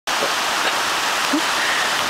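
Fast mountain stream rushing over bedrock cascades: a steady hiss of white water.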